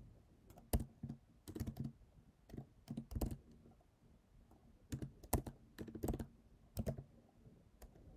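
Computer keyboard being typed on: irregular keystroke clicks, some single and some in quick runs of two to four, with short pauses between.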